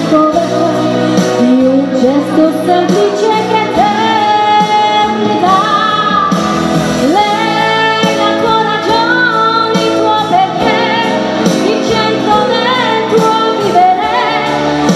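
A woman singing a pop song live into a handheld microphone, her amplified voice carrying a melody over a pop music accompaniment.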